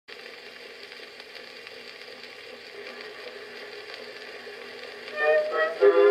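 Edison cylinder phonograph playing a Blue Amberol cylinder: a steady hiss of surface noise and machine running noise through the lead-in, then the record's music begins, much louder, about five seconds in.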